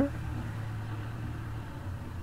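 Hongyan Genlyon C500 truck's diesel engine idling with a steady low hum, heard from inside the cab.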